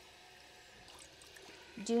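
Faint, steady trickle of water running from a bathroom sink faucet over hands being rinsed.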